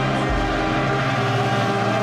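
Orchestral national anthem playing steadily, with sustained notes over a low bass line that changes note about every second or two.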